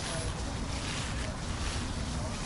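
Wind buffeting the microphone outdoors: a steady low rumble with a rushing hiss over it.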